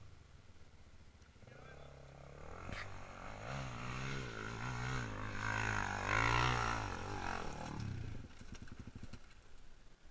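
Dirt bike engine revving hard and unevenly as it climbs a steep, loose hill, growing louder to a peak about six seconds in. It then drops to a brief low, uneven putter near the end as the bike tips over on the slope.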